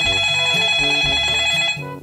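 A mobile phone ringtone: a loud, bright trilling ring lasting a little under two seconds, then cutting off, over light background music.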